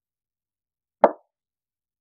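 A single short knock, about a second in, of something being set down on a wooden office desk.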